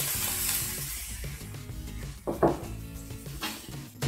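Broccoli florets dropped into a hot pan of vegetables, sizzling loudest at first and then easing. About two and a half seconds in, a bowl is set down on the counter with a knock.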